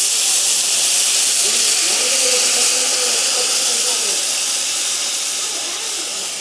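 Water poured into a hot iron kadai of fried chopped bitter orange, hissing and sizzling steadily as it hits the hot oil, slowly easing off toward the end.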